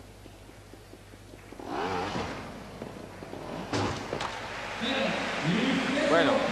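Trials motorcycle dropping off a box obstacle onto the arena floor, with a sharp knock of the landing just under four seconds in. Voices rise in the hall near the end.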